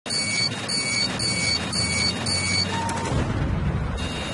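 Intro sound effect: five evenly spaced electronic beeps, about two a second, then a short lower tone and a low rumbling swell near the end.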